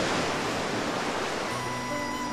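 Sea surf washing onto a sandy beach, a steady rush of breaking waves. Soft sustained music notes come in about one and a half seconds in.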